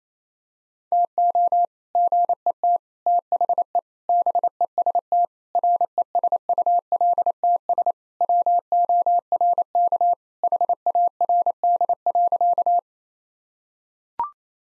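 Morse code sent at 28 words per minute as a single steady keyed tone, short and long beeps in groups, repeating the sentence "to get the best results work hard". It starts about a second in and stops about a second before the end.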